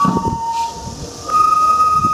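Festival music for a Japanese lion dance: a bamboo flute holds high notes, breaks off briefly in the middle and comes back in a little after a second in, over repeated strokes on the dancers' small hand-beaten drums.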